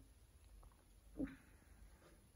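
Near silence: room tone, broken by one brief faint sound a little over a second in.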